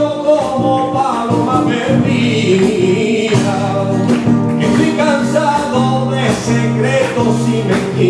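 Live copla with flamenco-style accompaniment: a man sings long wavering notes without clear words, over a Spanish guitar, while hand clapping keeps time.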